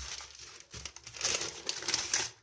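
Butter paper crinkling and rustling as it is wrapped and rolled by hand around a paratha roll. The rustling comes in uneven bursts and grows busier in the second second.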